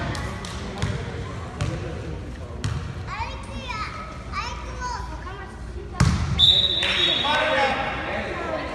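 Basketball bouncing a few times on a gym's hardwood floor as a player dribbles before a free throw. About six seconds in there is a loud sharp bang, then a short high referee's whistle, with voices of players and spectators.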